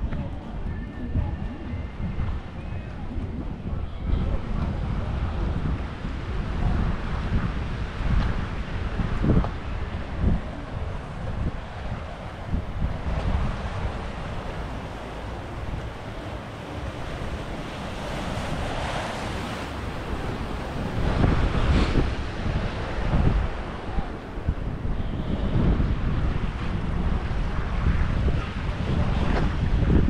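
Wind buffeting the microphone, a low uneven rumble, over a soft wash of harbour water.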